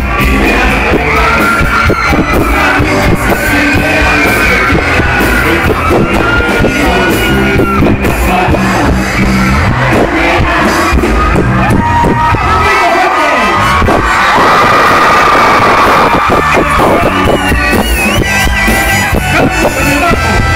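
Live rock band playing with a singer, loud throughout. The bass and drums drop out briefly about twelve and a half seconds in, then the full band comes back in.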